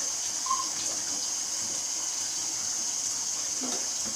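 Water running steadily into a kitchen sink, an even hiss, as water is poured from a small steel cup over a newborn being bathed.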